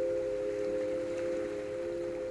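Meditative sound-piece drone: several steady tones close together in pitch, held evenly.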